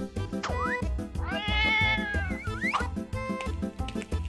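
Background music with a steady beat. Over it, after a quick swoop near the start, a cat gives one long meow of about a second and a half, rising in pitch at its end.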